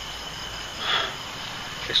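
Night insects chirping steadily in the background, with a short breathy noise about a second in.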